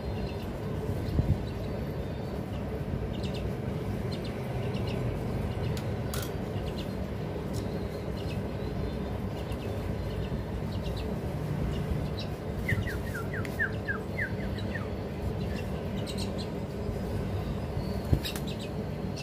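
Young mynas chirping: scattered faint short chirps, then a quick run of about eight short, downward-sliding chirps roughly two-thirds of the way through, over a steady low background noise.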